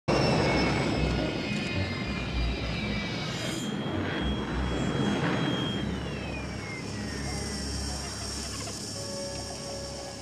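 Film sound of a hovering landspeeder's steady hum over street background noise. A little past halfway its whine glides down in pitch as it slows to a stop.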